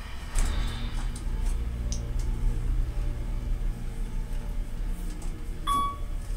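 Otis hydraulic elevator travelling between floors, heard from inside the cab: a steady low hum starts about half a second in and fades out about five seconds in. A short high electronic tone sounds near the end as the car reaches the floor.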